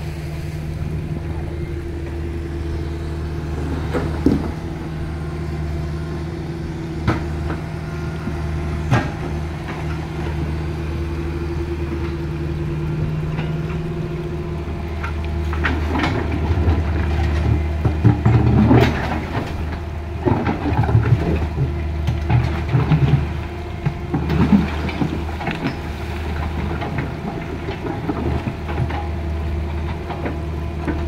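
Small tracked excavator's diesel engine running at a steady pitch. From about halfway on, clanks and scraping join it as the bucket digs rocks out of the shallow river water.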